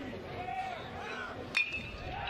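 A metal baseball bat strikes the ball about a second and a half in: one sharp ping with a brief ringing tone, the batter lining a base hit. A murmur of crowd voices runs underneath.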